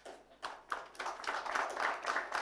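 Audience applause: scattered claps begin about half a second in and build into steady clapping.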